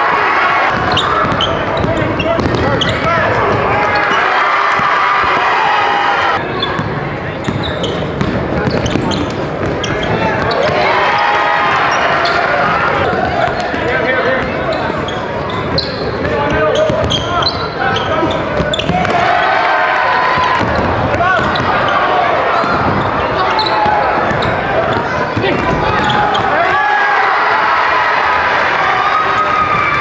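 Basketball game sounds: a ball bouncing on the court amid many overlapping, indistinct voices of players and spectators.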